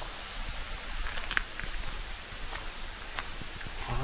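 Steady rush of a mountain stream far below, with a few light footsteps on the path.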